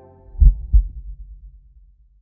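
Logo sting of two deep bass thumps about a third of a second apart, like a heartbeat, each ringing out and fading away, following the tail of soft ambient music.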